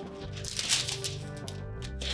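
Background music, with the crinkling of a plastic-backed heat-transfer foil sheet being handled, most noticeable about half a second to a second in.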